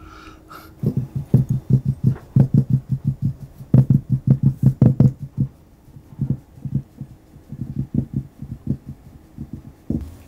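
Rapid low thumping, about five beats a second, loud for the first few seconds, then weaker and more scattered after a short pause.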